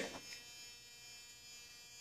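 Faint steady electrical hum with a thin high whine, unchanging throughout.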